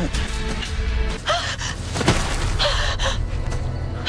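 Dark background music under a young woman's sharp, gasping breaths, several in a row.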